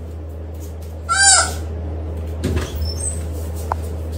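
A baby's short, high-pitched squeal about a second in, rising then falling, over a steady low hum.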